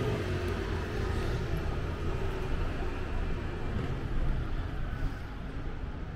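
Steady, low-pitched background noise of city street traffic.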